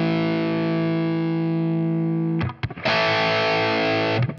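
Electric guitar through the NUX Trident's Keeley-style compressor set to slow attack with its clipping turned up, into a Marshall JCM800 amp model: a distorted chord sustains, is cut off about two and a half seconds in, and a second chord is struck and rings on.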